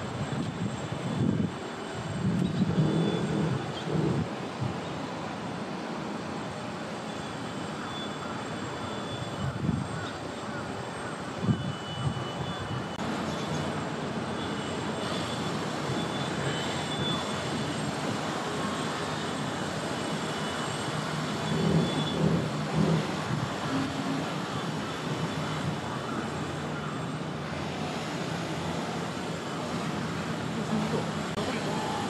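Steady outdoor background rumble, the kind made by a passing aircraft or distant city traffic. A few brief, louder low sounds rise over it near the start and again about two-thirds of the way through.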